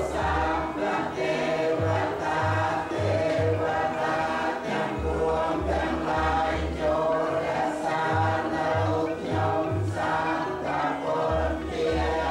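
A group of voices chanting together on long held notes, Buddhist-style, with a low beat pulsing about twice a second in short runs of three or four.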